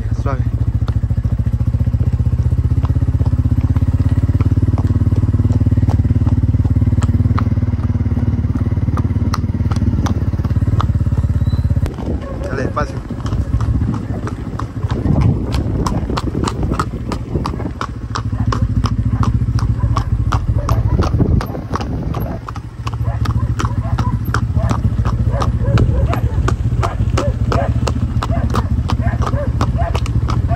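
A small motorcycle engine running at low speed while hooves clop steadily close by on the road. The engine drops away twice, leaving the quick run of hoofbeats plainer.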